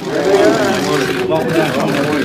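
Crowd chatter: many voices talking at once, a dense, steady hubbub of overlapping voices.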